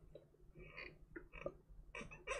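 Near silence: room tone with a few faint, short, indistinct sounds.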